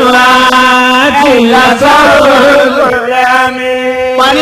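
A single voice chanting in long, held notes with ornamented bends in pitch between them, in the style of Islamic vocal chant.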